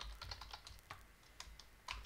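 Quiet typing on a computer keyboard: a run of light, irregularly spaced key clicks.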